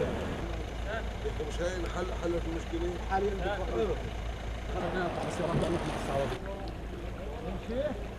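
Indistinct chatter of several men over a steady low rush of water running through a concrete culvert.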